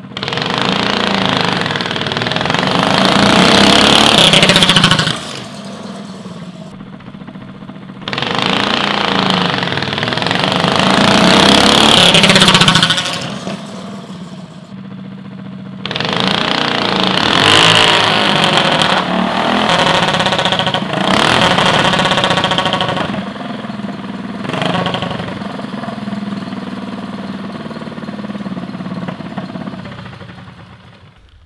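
Predator 212cc single-cylinder go-kart engine revving hard through two drag runs of about five seconds each. About halfway through, a third run revs up and down unevenly for several seconds, then falls back to a lower running note: the centrifugal clutch is giving out, with the engine revving up and starting to catch before the drive fails.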